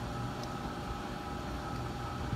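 Steady low machine hum with a few faint steady tones, and one faint click about a quarter of the way in.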